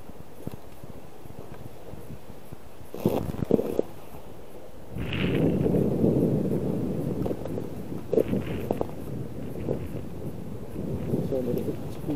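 Bicycle tyres rolling over rough, frozen sea ice: a low, even rumbling noise that starts about five seconds in and carries on.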